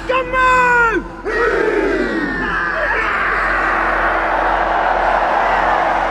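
Haka being shouted by the All Blacks: a long, held war cry that falls in pitch and breaks off about a second in, then another falling shout, followed by a loud crowd roar.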